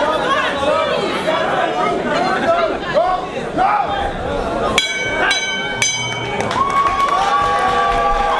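A crowd of spectators shouting and chattering, then a boxing ring bell struck three times, about half a second apart, signalling the end of the round, followed by louder cheering.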